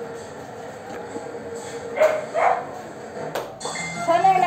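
A dog barking twice in quick succession about two seconds in, then a single sharp click near the end.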